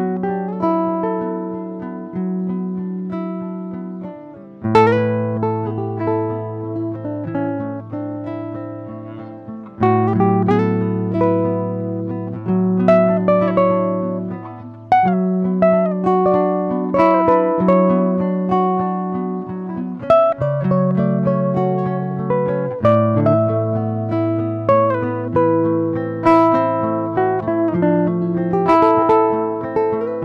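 Classical guitar playing a fingerpicked piece: plucked melody notes that ring and fade, over low bass notes that change every few seconds.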